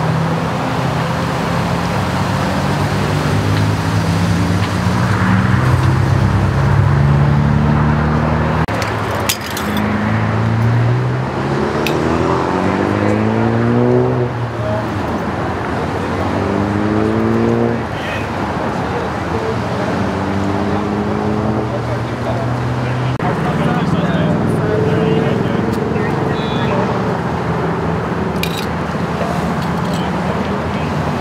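Indistinct voices talking over the steady rumble of idling emergency vehicles and freeway traffic, with a couple of sharp clicks.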